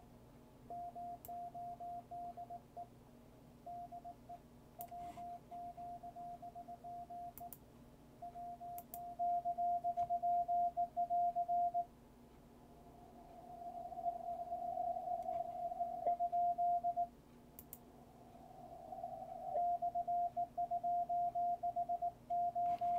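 A Morse code (CW) station received on the 20 metre amateur band: a single steady beep tone keyed on and off in dots and dashes. For a few seconds near the middle the tone swells and the keying runs together, then clean on-off keying resumes.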